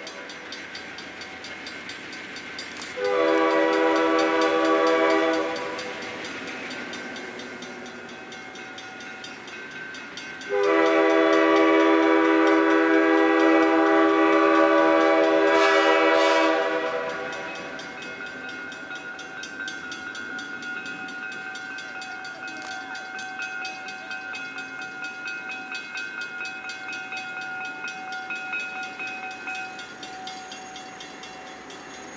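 Alco diesel locomotive's air horn sounding a chord in two blasts: a shorter one about three seconds in and a long one of about six seconds starting near ten seconds. Between and after the blasts the approaching locomotive's engine runs steadily and more quietly.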